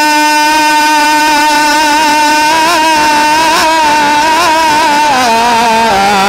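A male naat reciter holding one long sung note into a microphone, with a few small ornamental wavers, sliding down in pitch near the end.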